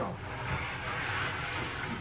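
Plywood mock-up centreboard being pulled up out of its plywood trunk: wood scraping and sliding on wood in one continuous rasping rub lasting about two seconds, loudest midway.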